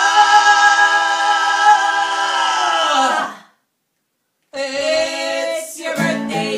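Recorded vocal music: a long held sung note fades out about three and a half seconds in, a second of silence follows, then singing starts again.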